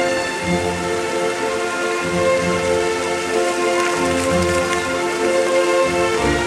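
Orchestral music of sustained, held chords played over the steady splashing hiss of fountain jets falling into a pool.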